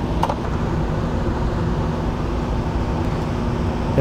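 Biosafety cabinet blower running: a steady rush of air with a low hum.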